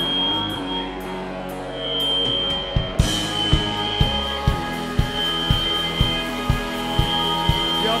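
Live band music: a loud, sustained droning noise with a steady high tone over it, then about three seconds in a beat starts, hitting about twice a second.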